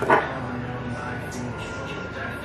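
A dog barks once, short and loud, just after the start, over a low background of music and talk.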